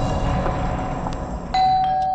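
Dark background score, then about a second and a half in a doorbell chime rings out clearly and slowly dies away, announcing a caller at the door late at night.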